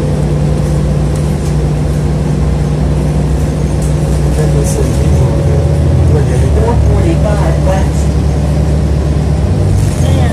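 Interior of a moving city transit bus: the engine and drivetrain running with a steady low drone and a faint steady whine over road noise. Faint voices of other passengers come through partway in.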